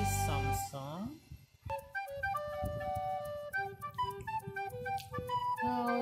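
Music: a held chord fades out, and after a short lull a flute-like melody of steady, separate notes begins about a second and a half in.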